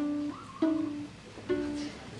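Three single plucked electric guitar notes, each ringing briefly, about half a second to a second apart.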